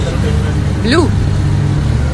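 Motorboat engine running with a steady low rumble, heard from inside the boat's cabin while under way.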